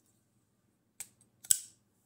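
CRKT Fossil folding knife flipped open on its freshly oiled ball-bearing pivot: a light click about a second in, then a loud sharp snap half a second later as the blade swings out and locks open. The blade opens fast, like an assisted opener.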